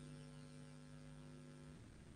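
Near silence with a faint, steady electrical hum that fades out near the end.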